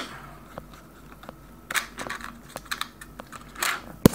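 Fingers fumbling a plastic SD card adapter against its slot: a few small, scattered clicks and short rustles as the card is pushed and repositioned, with a rustle of the camera being handled near the end.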